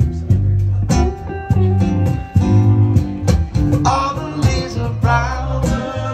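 Acoustic guitar strumming chords live, with an electric guitar alongside. A singing voice comes in about four seconds in.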